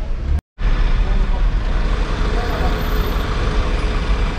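A steady low mechanical rumble, broken by a brief moment of complete silence about half a second in where the recording cuts out.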